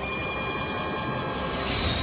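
Ominous film score under a magic-spell sound effect: high steady ringing tones for the first second and a half, then a swelling whoosh near the end.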